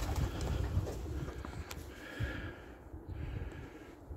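Domestic pigeons cooing in their loft, over a low uneven rumble on the microphone.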